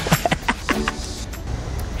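Background music with a low steady rumble and a few short clicks, without speech.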